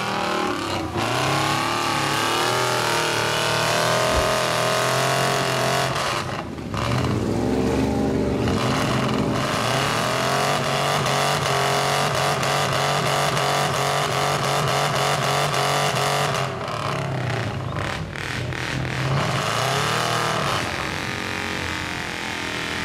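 Lifted mud truck's engine revved hard as it ploughs into deep mud and bogs down, the revs climbing and held high with the wheels spinning and throwing mud. The revs ease off briefly twice and climb again.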